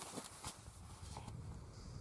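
A few faint scuffs and crunches of footsteps on a gravel path.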